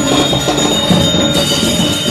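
Balinese priest's genta, a brass ritual hand bell, rung continuously with a sustained high ringing, its set of tones shifting about one and a half seconds in.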